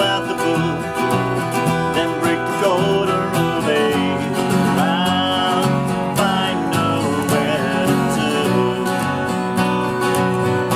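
Several acoustic guitars playing a song together, strummed chords under a lead line that slides and bends between notes.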